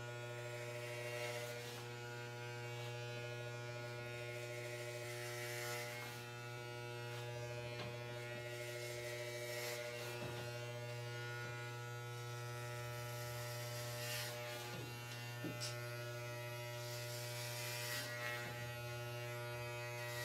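Corded electric hair clippers with a number-four guard, buzzing steadily as they cut through long hair.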